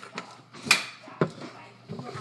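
A few short, sharp knocks from kitchen items being handled, the loudest a little under a second in and a second one about half a second later.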